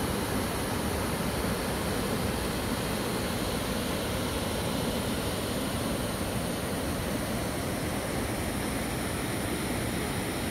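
A waterfall and the rocky rapids below it rushing with a steady, unbroken roar of water.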